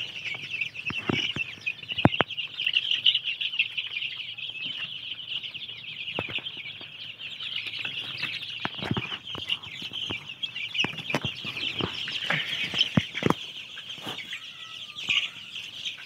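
A large flock of month-old country chicks peeping continuously in a dense, overlapping chorus, with a few sharp taps scattered through it.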